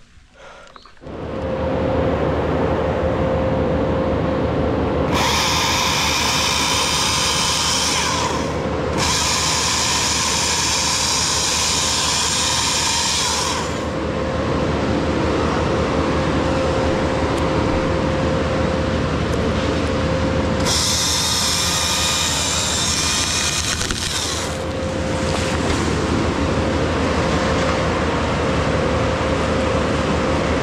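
Husqvarna T542i battery top-handle chainsaw starting up about a second in and running steadily with a motor whine. The chain cuts into the poplar wood in three stretches, adding a high screech: about five seconds in, again about nine seconds in, and about twenty-one seconds in.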